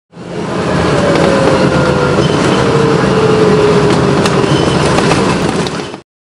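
Loud, steady vehicle or street-traffic noise with a low rumble and a faint tone sliding slowly down in pitch. It fades in at the start and cuts off suddenly at the end.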